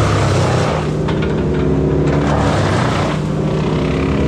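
Diesel engine of a grapple machine running hard while its hydraulic grapple grabs and lifts brush, the engine note shifting with the load. A few short cracks of branches.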